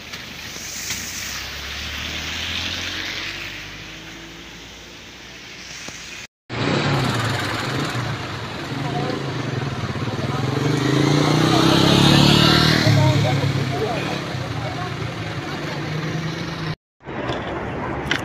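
Road traffic on a wet road: engine hum and tyre noise from passing vehicles, loudest as one passes close about twelve seconds in. The sound cuts out briefly twice.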